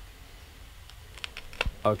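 A handful of light, quick computer-keyboard clicks about a second in, one with a soft low thump, followed by a man saying "okay".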